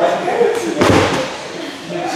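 A single loud thud about a second in, a heavy impact on the floor or mat of a wrestling training hall, amid men's voices.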